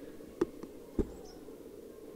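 Two short sharp knocks about half a second apart from the handheld camera being moved, over a faint steady hum.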